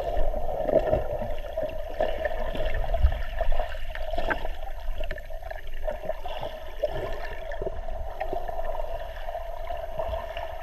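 Muffled underwater sound from a GoPro in its waterproof housing moving through lake water: a steady drone with low rumbling, dotted with irregular small clicks and gurgles.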